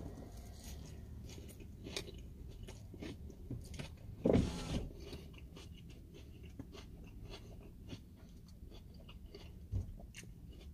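A person chewing a mouthful of crispy chicken salad with lettuce: crunchy chewing with many small crackling clicks. About four seconds in there is a brief voiced sound from the eater, louder than the chewing.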